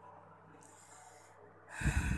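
Faint steady hum, then near the end a short, loud burst of breath close to the microphone.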